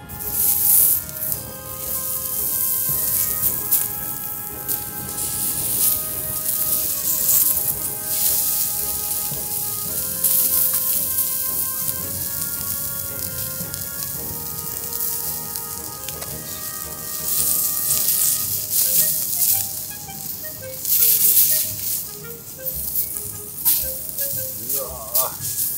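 Pork heart slices sizzling on a small iron griddle plate over a canister gas stove. The sizzle flares up several times as pieces are laid on and turned. Background music with held notes plays under it.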